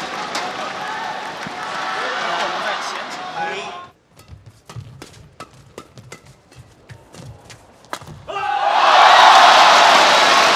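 Badminton rally in an arena: a quick, irregular series of sharp racket strikes on the shuttlecock with shoe squeaks, under a hushed crowd. About eight and a half seconds in, the crowd bursts into loud cheering and applause as the point ends. Before the rally there is crowd noise from the previous point.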